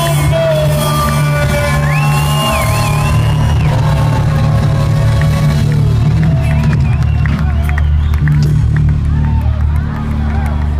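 Live band music with steady bass and sustained notes, with a crowd whooping and cheering over it.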